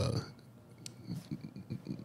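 A pause in a man's speech: the end of a word at the start, then faint low murmurs and one small click.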